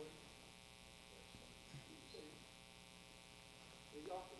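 Near silence: a steady electrical mains hum, with a faint murmur of voices in the middle.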